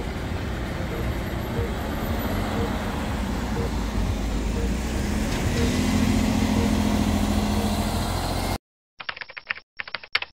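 Diesel truck and SUV engines running under load with tyres on snow, a steady dense noise with an engine tone that rises and holds from about halfway through; it cuts off abruptly near the end.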